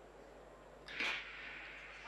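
A race starting gun fires once about a second in: a single sharp crack whose sound rings on in the stadium afterwards, marking a clean start.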